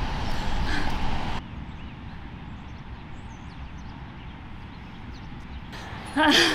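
Outdoor ambience with heavy wind noise rumbling on the microphone for about the first second and a half, then cutting abruptly to a quieter open-air background with a few faint bird chirps.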